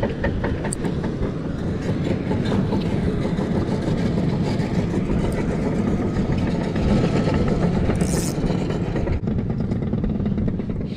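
Wind buffeting the microphone, a steady low rumble, with a few light clicks near the start and a brief hiss about eight seconds in.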